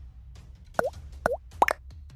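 Three quick cartoon 'bloop' pop sound effects, each dipping and then rising in pitch, about half a second apart, over a faint low hum.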